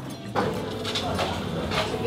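Restaurant background: indistinct voices with a few light clinks of utensils on dishes.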